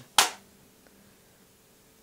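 A single short, sharp burst of noise about a quarter of a second in, gone within a fraction of a second, then quiet room tone with a faint steady hum.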